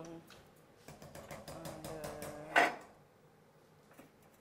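A metal ladle stirring rice in a pot, with several light metal clinks against the pot in the first couple of seconds.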